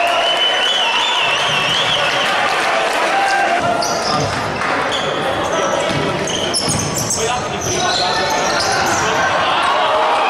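Futsal players' shoes squeaking in many short, high chirps on the hardwood court of a sports hall, over a steady hubbub of voices from the stands.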